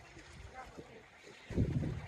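Wind buffeting the microphone: a low rumble that suddenly grows loud about one and a half seconds in, with faint voices in the background.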